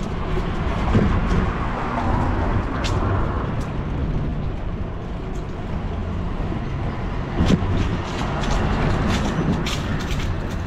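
Street traffic noise: a car passes, swelling and fading during the first few seconds, over a steady low rumble with scattered light clicks.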